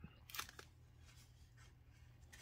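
Faint handling of small cardboard boxes in the hands, with one brief crinkle about half a second in; otherwise near silence.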